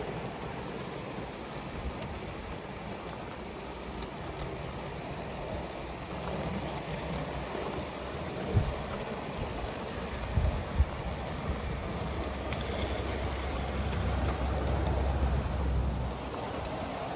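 Gauge 1 model trains running on an outdoor layout: a steady rushing hiss with a few sharp knocks about halfway through, and a low rumble building near the end.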